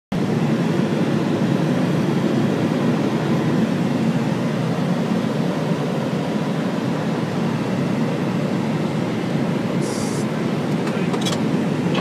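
Steady airliner cockpit noise in flight, the rush of airflow and engines, with the aircraft descending on approach. A brief hiss comes about ten seconds in, followed by a few faint clicks.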